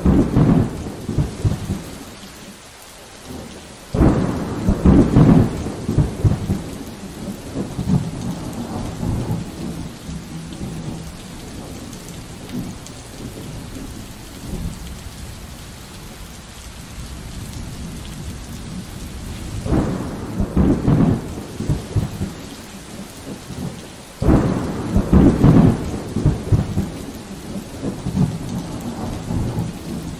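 Steady rain with thunder: loud low rumbles break in suddenly about four seconds in and again later on, each dying away over a few seconds, over a constant hiss of rain.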